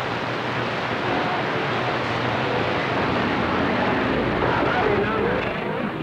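CB radio receiver hiss between transmissions, with a faint, garbled voice coming through the static in the second half.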